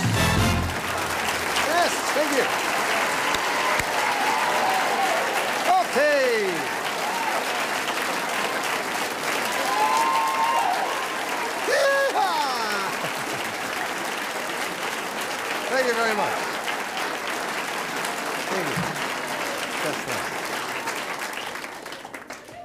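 Studio audience applauding and cheering, with whoops and shouts rising and falling through the clapping; the show's theme music ends in the first second.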